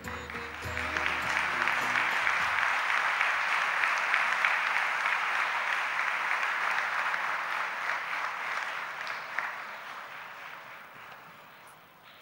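Audience applauding, swelling within the first second, holding steady, then dying away over the last few seconds. Instrumental music plays under it for the first two seconds or so.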